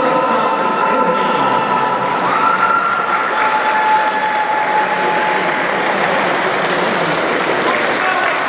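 Arena crowd applauding the winner at the end of a boxing bout, with a few long held notes of music or voices sounding over the clapping.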